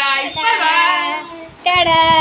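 A woman and a child call out long, sing-song goodbyes, their voices sliding up and down in pitch, then a steady held note near the end.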